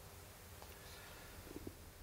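Near silence: room tone with a faint low hum, and a few faint soft ticks near the end.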